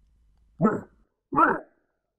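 A dog barking twice, two short barks under a second apart, from a dog that has been upset and is angry.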